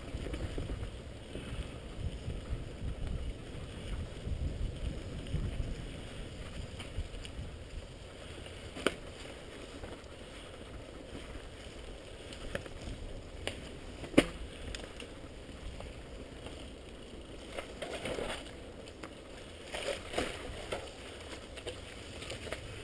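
Mountain bike ridden fast down a dirt forest trail, heard from a camera mounted on the bike: a steady low rumble of tyres and wind on the microphone. Two sharp knocks from the bike jolting over bumps, the second and louder about two-thirds of the way in.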